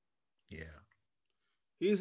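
Mostly silence, broken by one brief click-like sound about half a second in.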